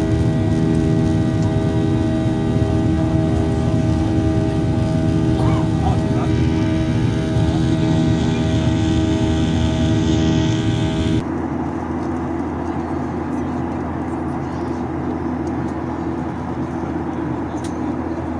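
Jet airliner cabin noise in flight: a steady engine drone with many held tones over a rushing bed. About eleven seconds in it changes abruptly to a smoother, quieter rush with fewer tones.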